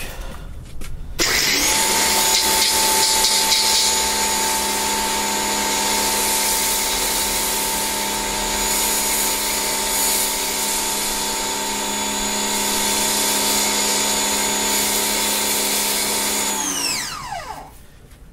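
Pressure washer running and spraying through a Harbor Freight foam cannon with its knob opened three quarters of a turn: a steady whine over the hiss of the foam spray. It starts about a second in and winds down in pitch near the end as the spraying stops.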